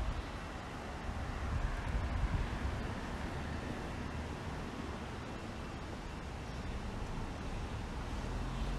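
Steady road traffic noise on a city street, a low rumble and hiss of passing cars and buses, swelling slightly about two seconds in, with some wind on the microphone.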